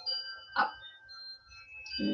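A short melody of clear, steady chime-like tones, each held for about half a second before the next note at a different pitch takes over.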